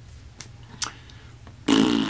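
A man blowing air out through pursed lips in a short, buzzing lip-flutter 'pfff' near the end, after a quiet pause broken by a couple of faint mouth clicks.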